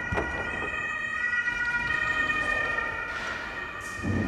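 A siren: several steady high tones that shift slightly in pitch, with a dull knock near the start.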